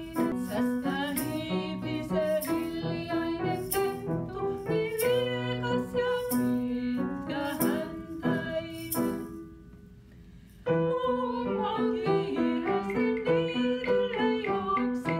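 Women singing a children's song to piano accompaniment, with short percussive strikes on the beat. The music drops to a brief pause about ten seconds in, then the singing and playing start again.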